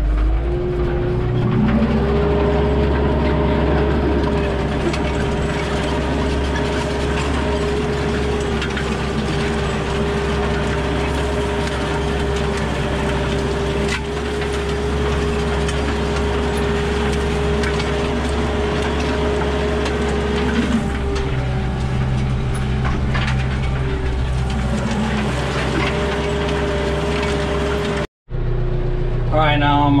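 Kioti RX7320 tractor's diesel engine running steadily under load, heard from inside the cab as it pulls a chisel disc harrow through the soil. The engine note holds one steady pitch, dips slightly about two-thirds of the way through, and the sound breaks off for an instant near the end.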